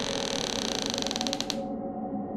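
Door hinge creaking as a door swings open: a fast run of creaks that slows and stops with a sharp click about one and a half seconds in.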